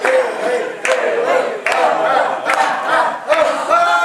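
A group of people chanting and singing together, with a sharp clap about every 0.8 seconds. Near the end they settle into one long sung note.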